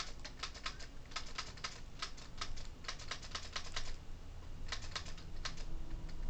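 Typing on a computer keyboard: a run of irregular keystrokes, with a short pause about four seconds in before the typing resumes.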